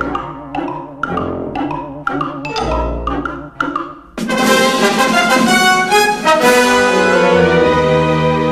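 Orchestral cartoon score with brass. It opens with short accented chords about twice a second, then about four seconds in it breaks into a louder, sustained full-orchestra passage.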